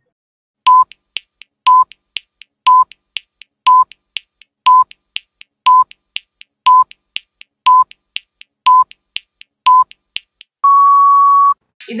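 Countdown timer sound effect: ten short beeps, one a second, with soft ticks between them, then one longer, slightly higher beep near the end as the 10 seconds run out.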